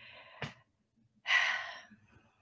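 A woman's audible sigh: one breathy exhale a little over a second in, after a short click near the start.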